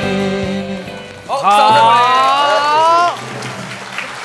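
A live pop song ends, its last band notes dying away in the first second. Then the studio audience cheers in high voices for about two seconds over a lingering low chord.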